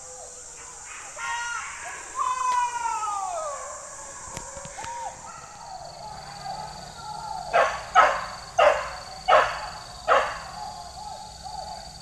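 Hunting dogs barking: a couple of drawn-out, falling yelps about two seconds in, then a run of about five sharp barks roughly two-thirds of the way through.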